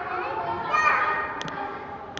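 Children's voices and chatter, with two quick clicks about one and a half seconds in.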